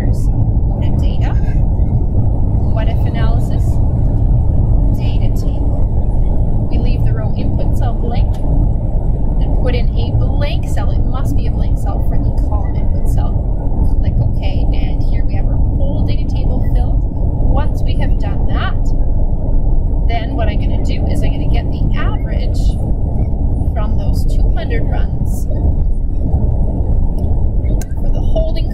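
A loud, steady low rumble of background noise, with indistinct, muffled voices and scattered clicks above it.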